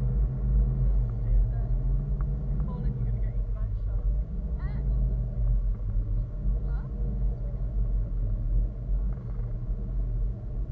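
Wind buffeting an action camera's microphone in flight, a steady low rumble, with faint voices in the middle.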